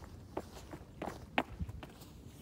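Tap shoes striking a hard outdoor surface in about five scattered taps, the loudest about a second and a half in.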